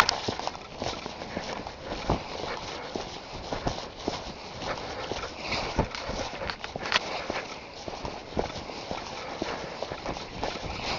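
Footsteps through dry fallen leaves and twigs on a forest path, a continuous rustle with irregular crackles and knocks from each step.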